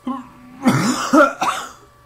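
A man clearing his throat and coughing: a short voiced sound at the start, then three quick, harsh coughs from about half a second in.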